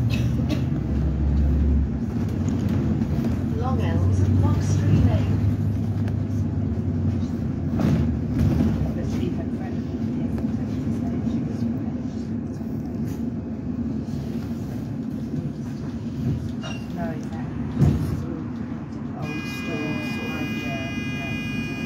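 Running noise inside a moving bus: a steady low engine drone and road rumble as it drives along, with voices in the background.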